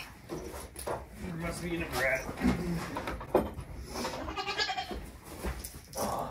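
Nigerian Dwarf goats bleating several times, with a man's short laugh about three and a half seconds in.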